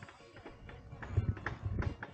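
Several dull low thumps in quick succession from about a second in, from a camera carried on foot, over a faint background.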